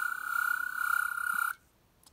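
Twelfth Doctor sonic screwdriver toy playing its electronic sonic sound effect in blue-light mode: a steady, high-pitched electronic whine that cuts off suddenly about one and a half seconds in as the activator is released.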